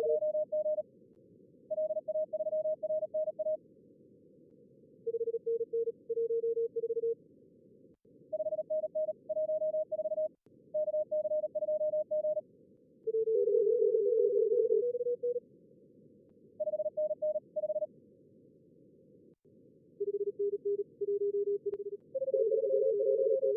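Simulated Morse code (CW) contest traffic from a contest logger's two-radio practice simulator: fast runs of keyed beeps at two different pitches, one for each radio, taking turns with short pauses between and briefly overlapping near the middle. Under it runs a steady hiss of simulated receiver band noise.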